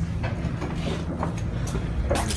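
Bus engine running with a steady low drone, heard from inside the bus cabin, with a few faint knocks.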